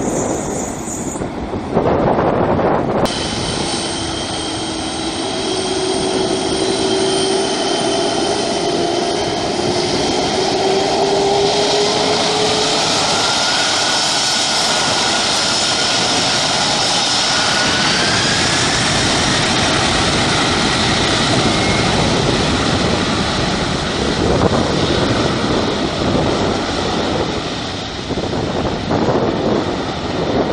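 The four turbofan engines of a KLM Boeing 747-400 spool up to takeoff power: a steady, loud jet roar with whines that climb slowly in pitch over about twenty seconds. The first three seconds hold the end of a landing run, cut off by a short loud burst.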